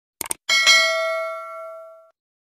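Sound effect for a subscribe animation: a quick double mouse click, then a bright bell ding struck twice in quick succession, ringing on and fading away over about a second and a half.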